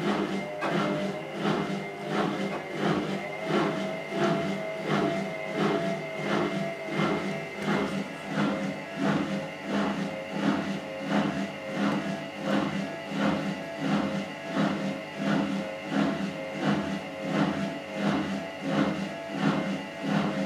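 Gorenje WaveActive front-loading washing machine in a service test step, its drum motor running with a steady hum and whine. The sound swells in a regular pulse a little under twice a second as the drum turns with the wet test cloth.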